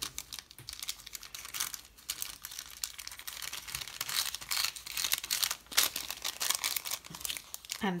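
Rustling and crinkling of a translucent paper envelope being folded and handled, a rapid run of short crinkles that is busiest about halfway through.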